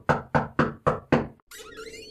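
A quick run of knocks, about four a second, five in all, stopping a little over a second in; then a softer rustling noise with a faint hum.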